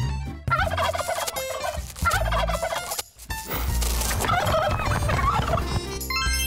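Turkeys gobbling in three bursts, the last the longest, with a short break about three seconds in, over music with a low bass line.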